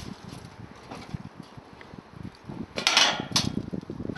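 Footsteps crossing a steel-grating footbridge, a run of short dull knocks from the metal grating underfoot. A brief rushing noise comes about three seconds in.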